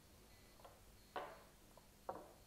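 Light wooden knocks on a stone work surface as a wooden slab and its small support blocks are handled: one sharper knock about a second in, with fainter taps before and after.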